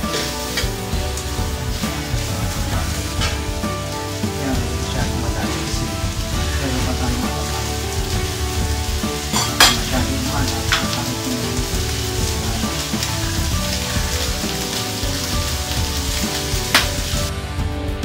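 Diced pork sizzling as it fries in a stainless steel wok, stirred with a metal spatula that clicks against the pan a few times, loudest about ten seconds in. Background music plays underneath.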